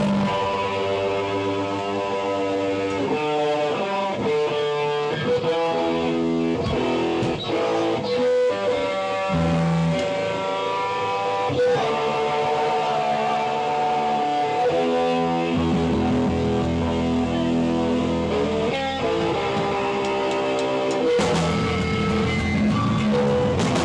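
Band playing live, mainly electric guitar: a run of distinct held and quicker notes with little drumming, and the drums come back in near the end.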